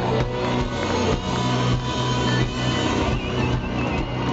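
Live rock band playing loudly through a PA, electric guitars and drums sustaining a dense wall of sound with held low notes, the closing flourish of a song.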